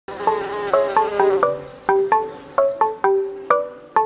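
Intro jingle: a buzzing bee sound effect over the first second and a half, under and then giving way to a bright melody of short, quickly fading pitched notes, about three or four a second.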